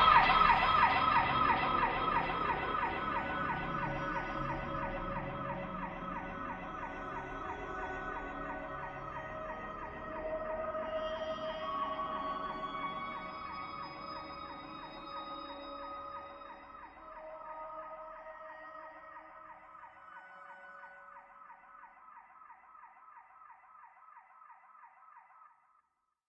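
The closing tail of an electronic ambient track: several held, regularly wavering electronic tones fading slowly away, with a few lower notes surfacing along the way, until the sound stops just before the end.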